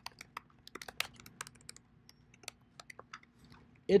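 Typing on a computer keyboard: a run of quick, irregularly spaced key clicks.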